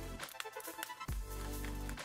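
Background music: quiet electronic music with a held low note through the second half.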